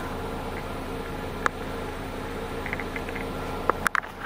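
A steady low mechanical hum, with a single sharp click about one and a half seconds in and a few more clicks near the end.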